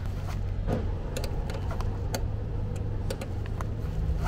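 Scattered light metallic clicks of a ring spanner and Allen key on a bolt as a nutsert is drawn up and set in a hole in the vehicle's body, over a steady low hum.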